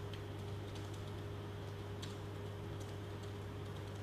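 Faint, irregular computer keyboard typing clicks over a steady low hum.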